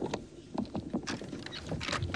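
Irregular crackles and sharp knocks over a steady low rumble, from a smoking overturned car.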